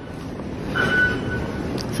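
Underground metro train rumble in the station, a low noise that swells about half a second in, with a thin steady tone ringing briefly about a second in.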